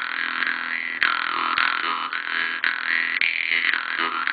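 Vietnamese three-tongued Jew's harp being played: a continuous twanging drone whose bright overtones glide up and down as the player's mouth reshapes them, with a sharp pluck about a second in.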